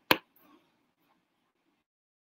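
A single short, sharp click just after the start, then nothing more.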